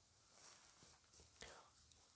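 Near silence: room tone in a pause of the narration, with a few faint, soft sounds.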